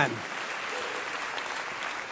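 A church congregation applauding steadily, an even patter of many hands.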